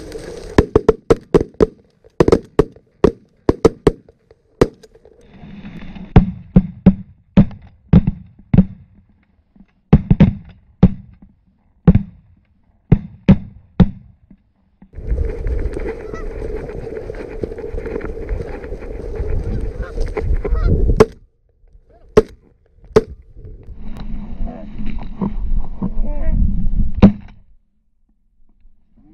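Canada goose honks and clucks: a long run of short, sharp, loud calls at irregular spacing, broken in the second half by two longer stretches of steady rushing noise.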